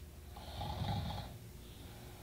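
A person snoring once: a single low, rattling breath lasting about a second, starting about half a second in.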